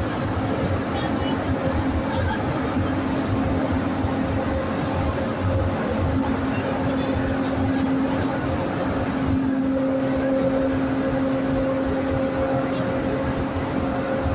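Buenos Aires Subte Line E metro train running through a tunnel, heard from inside the car: a steady rumble of the wheels on the rails with a constant humming whine that grows stronger about nine seconds in.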